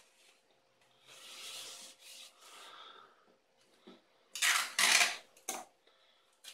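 Tissue paper and cellophane of a kite sheet rustling and rubbing under the hands while clear adhesive tape is handled and pressed on. Soft rustling in the first half, then a few louder scratchy strokes in the last two seconds.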